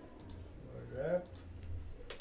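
Computer mouse clicks, two quick pairs, made while opening a menu and toggling a menu option. About a second in, a man gives a short hum that rises in pitch.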